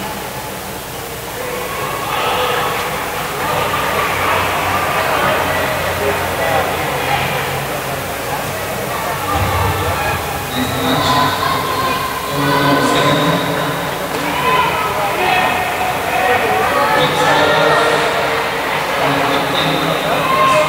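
Several people talking in a large, echoing sports hall, with overlapping voices and no shuttlecock strikes.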